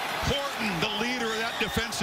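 A man's voice talking: play-by-play football commentary, in mid-sentence.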